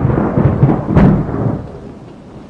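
Thunder over heavy rain: a loud rumble with a sharp crack about a second in, then fading into the hiss of falling rain.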